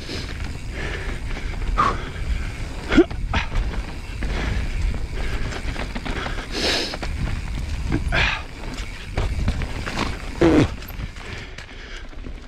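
Full-suspension mountain bike (Evil Wreckoning LB) descending a dirt and rock trail at speed: a steady low rumble of tyres rolling and air rushing past the helmet camera, broken by frequent short knocks and rattles from the bike over roots and rocks, the sharpest about three seconds in.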